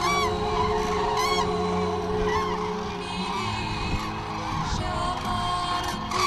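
Common cranes calling: a few calls that rise and fall in pitch, mostly in the first half, over background music.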